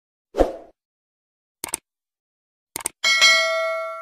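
Subscribe-button animation sound effects: a short thump, two quick pairs of clicks, then a bright bell ding about three seconds in that rings on as it fades.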